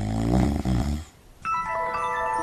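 A person snoring once, a loud, low, rattling snore that lasts about a second. About a second and a half in, bright chime-like music tones begin.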